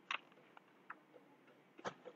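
Faint, sparse keystrokes on a computer keyboard: a few separate taps, the loudest near the end, as a command is typed and entered.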